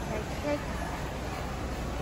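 Steady ambience of a busy warehouse store: a low rumble with indistinct background voices, and a brief tone about half a second in.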